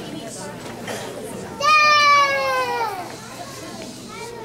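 Low chatter of a crowd of children and adults. About one and a half seconds in comes a child's loud, high-pitched, drawn-out call that slides slowly down in pitch over more than a second.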